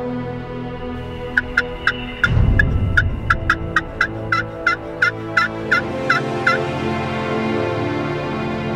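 A friction turkey call (pot call) worked with a striker, running a long series of about seventeen quick hen-turkey yelps that slow slightly toward the end, over background music. A loud low rumble comes in about two seconds in.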